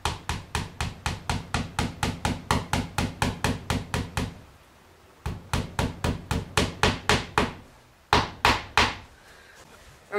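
Hammer tapping a nail into a plywood board: quick light taps about four a second, a short pause, another run of taps, then two harder blows near the end.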